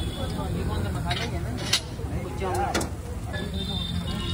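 Busy street background: a steady low rumble of traffic with voices, and a few sharp taps about a second, a second and three-quarters, and two and a half seconds in.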